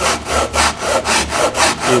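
A Japanese pull saw with a no-set blade (MIRAI α265, 265 mm) crosscutting a wooden board in quick, even strokes, about four a second. The blade runs flat against a magnetic-sheet guide so the cut stays straight.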